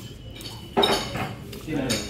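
Cutlery and plates clinking lightly on a dining table, a few sharp clinks over faint background chatter.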